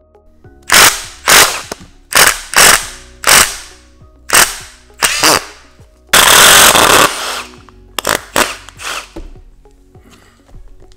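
Cordless impact driver on a long socket extension, run in about a dozen short bursts, with one longer run of about a second past the middle, as it works a fastener.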